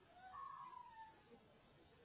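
Near silence, broken by one faint, distant wavering cry, rising then falling in pitch, about half a second in.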